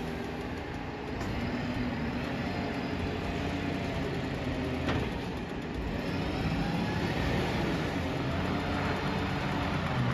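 Diesel engine of a Volvo side-loading garbage truck running as the truck drives slowly round a corner, getting a little louder in the second half. A single sharp click sounds about five seconds in.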